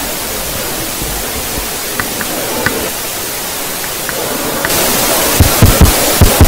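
Steady hiss from the hall's sound system, which gets louder and brighter about three-quarters of the way through. A few faint ticks come midway and a few low thumps near the end.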